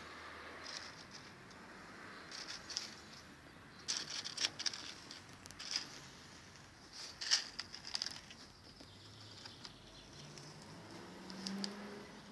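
Scattered light ticks and rustles as cocktail picks are pushed into grilled pineapple slices on paper plates. The picks and plates are handled on a wooden table, with the clearest ticks in the middle of the stretch.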